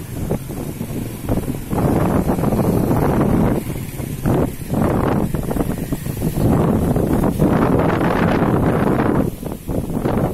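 Wind buffeting the microphone in uneven gusts, swelling and dropping throughout.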